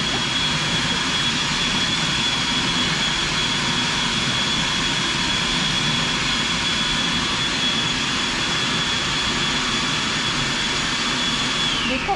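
Electric food processor running steadily, a loud rushing noise with a thin high whine, then switched off near the end, its whine falling in pitch as the motor spins down.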